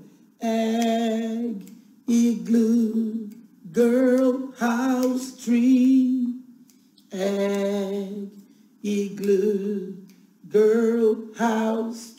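A woman singing unaccompanied in a slow sing-song, about six held phrases with short breaks between them.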